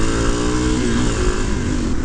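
Suzuki DR-Z400SM supermoto's 398 cc single-cylinder four-stroke engine pulling under way, its pitch rising as the bike accelerates. A steady wind rush on the on-bike microphone runs under it.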